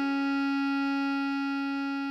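Bass clarinet holding one long note, written D#5 (sounding C♯4), over a sustained D♭ sus4 chord, in a steady rendered tutorial playback; it eases off slightly near the end.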